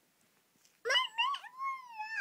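A baby's high-pitched squealing cry, starting about a second in after a short silence, rising sharply and then gliding slowly downward.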